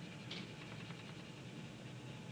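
Paper blending stump rubbing graphite into drawing paper, faint, with a brief sharper scrape about a third of a second in.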